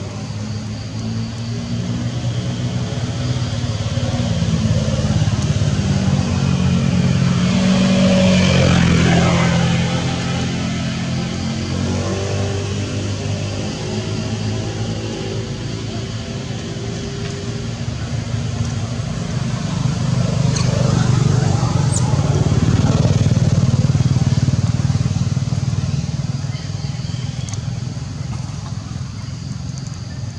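A motor engine running nearby, growing louder and fading away twice, with peaks about a third of the way in and again about three quarters of the way through.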